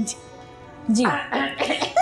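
A woman bursts into laughter about a second in, a breathy, coughing laugh.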